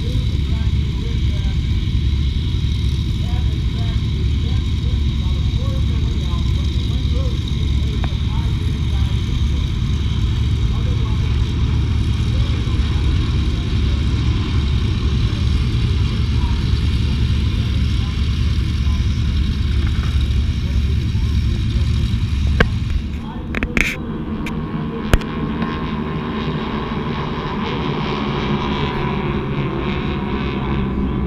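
Steady drone of a large formation of Van's RV kit-built propeller planes flying overhead, over a low rumble. A few sharp handling knocks come about 23 s in. After them the engine drone grows clearer and its pitch slowly rises.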